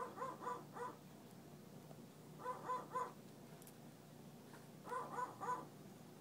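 Amazon parrot imitating dogs barking at a distance: three bursts of three quick yaps each, about two and a half seconds apart, sounding like faraway dogs.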